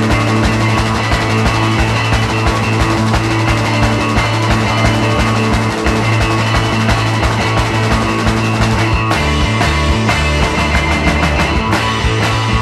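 Loud rock music: guitar, bass and a steady drum beat, with the bass line changing pattern about nine seconds in.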